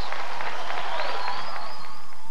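Audience applauding and cheering, with a thin high whistle running through the second half.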